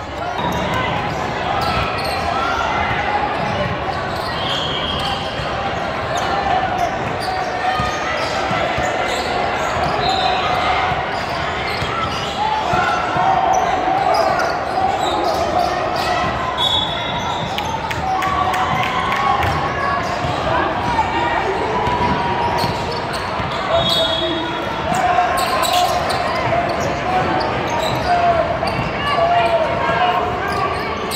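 Basketball game ambience in a large gym: many overlapping voices echoing through the hall, with a basketball bouncing on the hardwood court.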